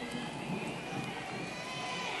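Low murmur of a large arena audience waiting for a winner to be announced, with indistinct voices and faint irregular patter.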